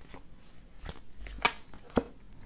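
A deck of oracle cards being shuffled by hand: soft card rustling broken by a few sharp card taps, the loudest about one and a half seconds in and another at the very end.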